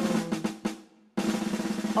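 Snare drum roll in the instrumental break of a recorded children's song, with a steady low note under it. It cuts out almost completely just before a second in, then starts again.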